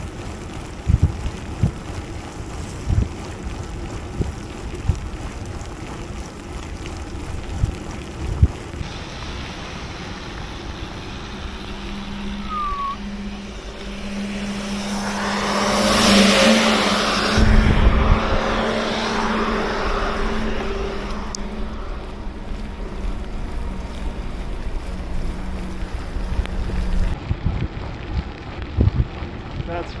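Wind buffeting the microphone and tyre noise on a wet road while cycling in the rain. From about halfway a heavy truck's engine swells up, passes loudly with a low rumble and steady hum, and fades over several seconds.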